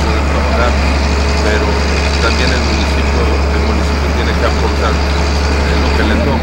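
Heavy diesel engine of a Caterpillar road reclaimer running with a steady low drone.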